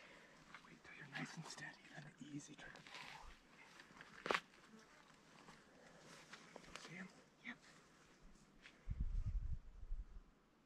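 Faint, hushed whispering between two hunters, with a sharp click about four seconds in and a short low rumble near the end.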